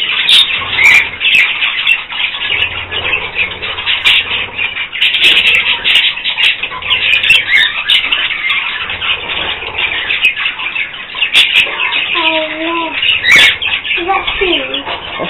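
A flock of budgerigars chattering and chirping without a break, a dense mix of warbles, chirps and short clicks.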